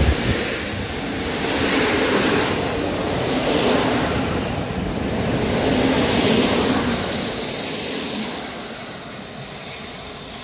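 Passenger coaches of a PKP Intercity train rolling past close by, with wheel-on-rail rumble rising and falling as the cars go by. About seven seconds in, a steady high-pitched wheel squeal sets in as the tail of the train moves away.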